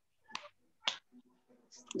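Two short, sharp clicks about half a second apart over a quiet background, typical of a computer mouse being clicked while seeking and restarting a video.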